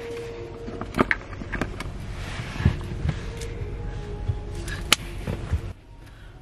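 Handling noise from a camera being passed around inside a car: scattered knocks, taps and rustling.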